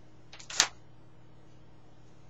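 A single sharp, short click about half a second in, with a couple of fainter clicks just before it, over a steady low hum.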